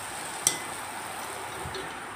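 Jalebi batter frying in hot oil in an iron kadai, a steady sizzle, with a single sharp click about half a second in.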